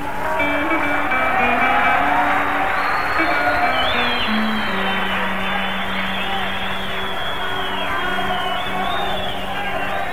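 Orchestral music: strings play a gliding melody over held low notes that step from one pitch to another.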